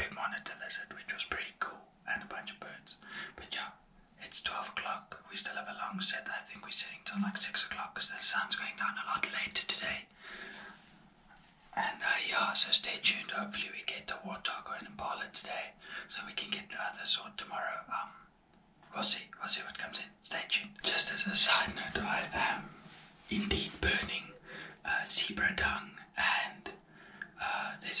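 A man whispering, speaking steadily with short pauses.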